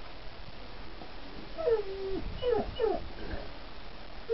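An animal giving a quick run of short pitched calls that fall in pitch, one of them held longer, starting about a second and a half in.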